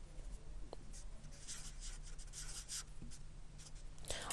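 Whiteboard marker writing on a whiteboard: a run of short, faint, scratchy strokes as a word is written.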